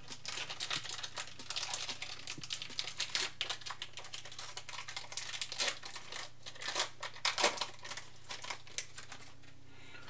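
Crinkling of a foil Pokémon booster pack wrapper and trading cards clicking and rustling as they are handled: a dense run of small crackles and clicks that thins out near the end.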